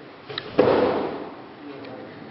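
An aikido partner being thrown and landing on the mat in a breakfall: one sharp thud about half a second in, echoing in the hall as it dies away.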